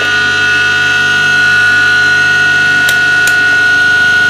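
Standard, unmodified 2 hp electric motor running unloaded off an inverter: a steady high-pitched whine over a low hum, growing slightly louder about a second in.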